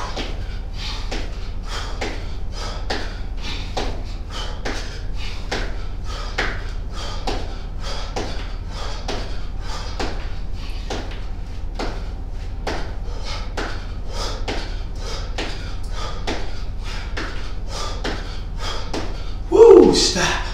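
Sneakered feet landing over and over on a floor mat as a person jumps in place, about two and a half landings a second, over a steady low hum. A louder burst comes just before the end.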